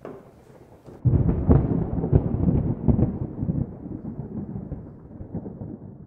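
A thunder-like rumble, added as a sound effect, starts suddenly about a second in. It is loudest at first, with crackling strokes through it, and dies away over the next few seconds.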